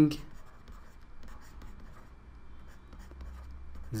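Stylus scratching faintly across a tablet as words are handwritten, in short irregular strokes over a low steady hum.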